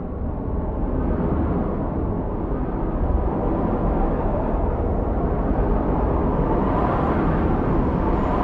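Film soundtrack sound design: a deep rumble with a rushing, wind-like noise that builds and grows brighter, rising in level about a second in.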